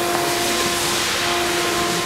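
Steady background hiss with a faint steady hum, with no distinct event.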